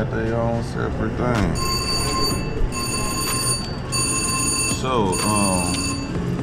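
Slot machine ringing in four bell-like bursts of about a second each, over casino floor noise with voices.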